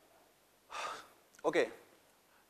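A man's short, sharp intake of breath, followed by a spoken "okay".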